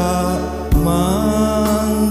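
A man singing a Javanese Christian hymn, holding and bending long notes, to electronic arranger-keyboard accompaniment with a steady bass and a drum stroke about three quarters of a second in.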